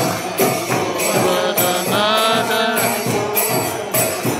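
Group devotional chanting (kirtan) with jingling percussion keeping a steady beat about twice a second. A single singing voice stands out clearly around the middle.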